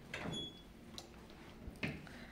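Footsteps and phone-handling knocks in a quiet, empty room: a few soft knocks, the loudest shortly before the end, with a brief high squeak near the start.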